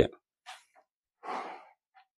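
A person breathing between sentences: a faint short breath about half a second in, then a longer, louder exhale like a sigh a little past one second.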